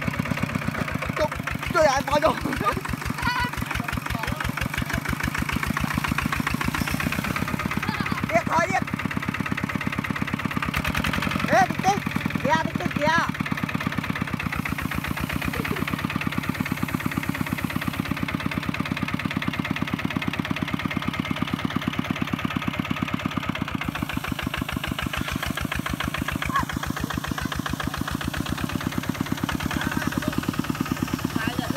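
Kubota two-wheel walking tractor's single-cylinder diesel engine running with a steady, rapid putter as it drives its steel cage wheels through deep paddy mud. Short shouts come in about two seconds in, around eight seconds and around twelve seconds.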